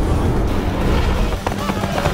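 Action-film fight soundtrack: background music with a man's yell, and a sharp hit about one and a half seconds in.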